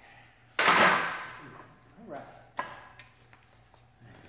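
A loaded barbell set back into the steel rack's hooks with one loud metal clank about half a second in, ringing off over about a second. A second, sharper knock follows near the end.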